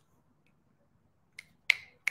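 Quiet room tone, then two short sharp clicks about a second and a half in, the second louder.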